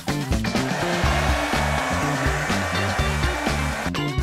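Hair dryer blowing steadily with a thin whine, starting about half a second in and cutting off just before the end, over background music.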